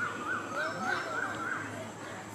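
A bird calling outdoors: a quick run of about six short, repeated notes, about three a second, that stops about a second and a half in.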